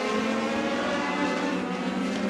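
Legend race cars' motorcycle-based four-cylinder engines running at high revs around the track, a steady buzzing drone whose pitch rises slightly.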